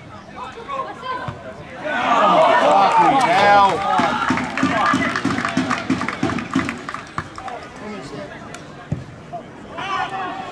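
Small football crowd calling out together, many voices at once, for a couple of seconds. Scattered hand clapping follows.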